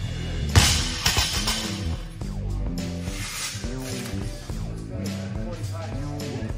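A loaded barbell with rubber bumper plates dropped from overhead onto the gym floor: a loud bang about half a second in, then about a second of clattering as the plates bounce. Background music with a steady bass line plays throughout.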